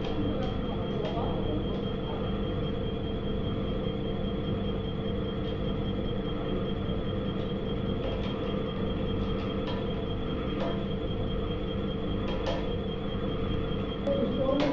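Compression testing machine's hydraulic pump and motor running with a steady hum and a constant high tone as it slowly loads a brick in compression. A few faint clicks come through now and then.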